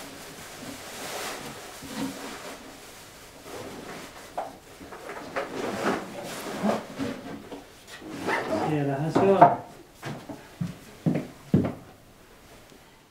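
A cardboard box being handled and opened, with rustling and knocks; a short stretch of speech about eight seconds in is the loudest part, and several sharp knocks come near the end.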